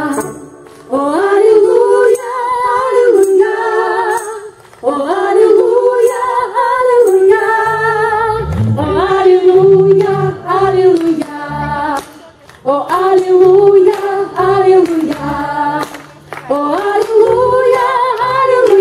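Women singing a slow melody in phrases with short breaks between them, mostly unaccompanied, with low notes sounding underneath in the middle phrases.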